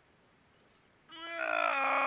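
A drawn-out roar-like cry starts about a second in, held at one pitch for over a second and dropping slightly as it fades.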